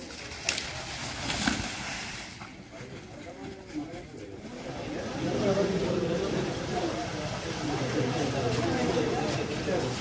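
Crowd of many people talking and calling out at once, growing louder about halfway through.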